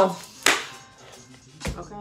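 A single sharp hand clap about half a second in, followed by a dull low thump near the end.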